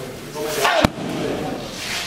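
A single sharp smack of a strike landing on a Muay Thai pad, just under a second in.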